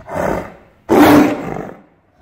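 Tiger roaring twice: a short snarling roar, then a longer, louder one about a second in.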